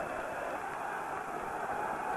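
Football stadium crowd, a steady wash of many voices from the stands with no single event standing out.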